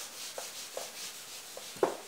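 A whiteboard being wiped clean: repeated rubbing strokes across the board, each with a short squeak, the sharpest squeak near the end.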